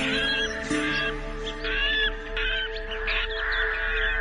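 Slow relaxation music with steady held tones, layered with birdsong: many short chirps and whistled calls that glide up and down in pitch.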